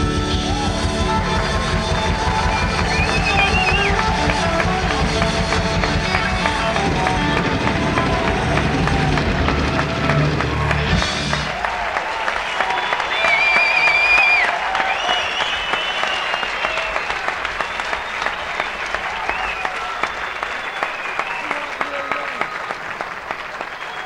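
Live rock band with electric guitars and drums playing the closing bars of a song and stopping about halfway through. Then a concert audience cheers, whistles and applauds, slowly fading.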